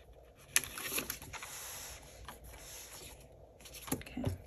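Paper and plastic sleeves rustling and sliding as a paper tracker card is handled in a small ring binder. There is a sharp click about half a second in and another near the end, as the binder's metal rings are opened.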